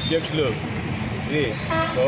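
A man talking at a roadside, with traffic noise behind and a brief vehicle horn toot near the end.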